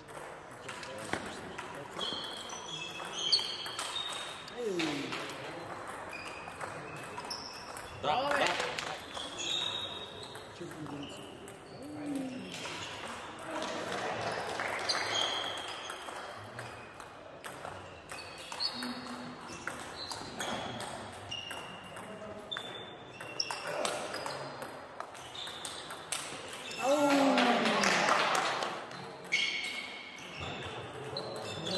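Table tennis rallies: the ball pings and clicks off bats and table in quick exchanges, echoing in a large sports hall. Voices rise over the play several times, loudest and longest near the end.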